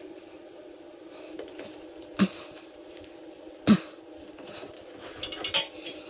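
Quiet handling noise from hands pressing a self-adhesive LED strip onto a wall, with two sharp knocks about two and three and a half seconds in and a cluster of small clicks near the end.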